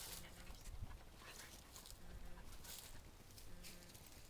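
A German Shepherd sniffing along a vehicle's side, a faint, irregular run of short, quick breaths through the nose.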